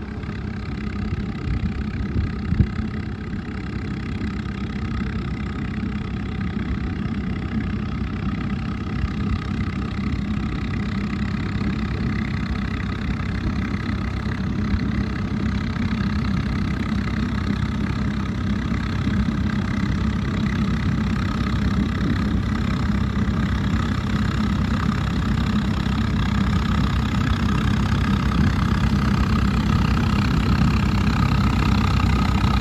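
Swaraj 855 tractor's three-cylinder diesel engine running steadily under load while it drives a PTO fan that sprays wet mud, growing gradually louder as the tractor comes closer. A short knock sounds about two and a half seconds in.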